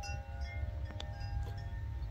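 Several steady ringing tones, like chimes, over a continuous low rumble, with a couple of light clicks about a second in.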